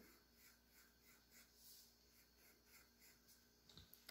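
Faint pencil scratching on paper in short repeated strokes, about three a second, as a bumpy outline is sketched.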